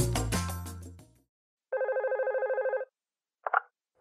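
Music fading out over the first second, then one ring of a telephone: a rapid electronic trill, about a second long, pulsing some thirteen times a second. A short blip follows near the end, just before the call is answered.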